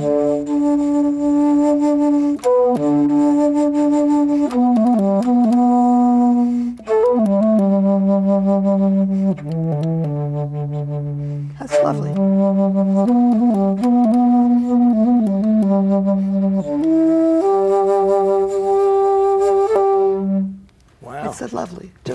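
Bass flute, pitched an octave below a regular concert flute, played solo: a slow melody of long held low notes joined by quick runs of notes. The playing stops a second or two before the end.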